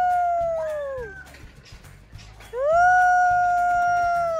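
A high voice holding a long 'ooh' on one steady pitch, twice, each note about two seconds long, sliding up into the note and falling away at the end, over a faint low beat.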